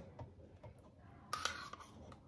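Mostly quiet, with faint light ticks and one brief soft scrape about a second and a half in, as chopped mango is pushed off a paper plate onto a cream-covered cake.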